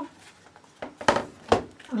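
Cardstock frame and card being handled and set down on a craft board: a few sharp taps, the two loudest about a second in and half a second apart.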